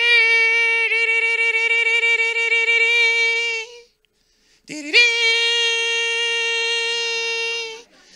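A man imitating a loud trumpet blast with his voice into a hand microphone: two long notes held on one steady pitch, with a short break about four seconds in, the second note starting with a quick upward scoop.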